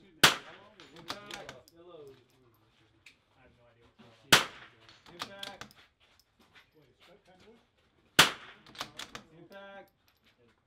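.22 rimfire rifle fired three times, about four seconds apart, each loud shot followed within a second by fainter clicks and a short ringing.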